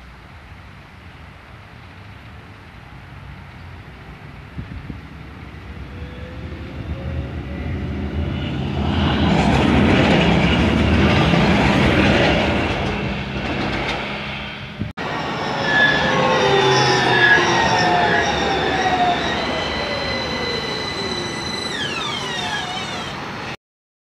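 Electric city tram approaching and passing on grass-set rails: its running noise builds over several seconds to a steady peak, then fades. After a sudden break, the tram's electric motor whine falls in pitch, and the sound cuts off abruptly near the end.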